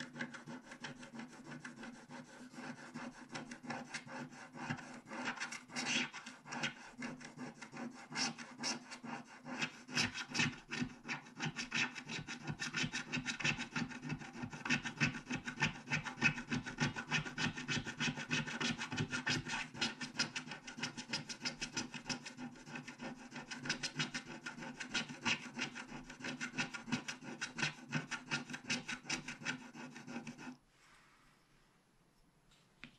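Continuous rapid scratching and rubbing strokes as the black wax coating is scraped off a scratch-art card, many strokes a second.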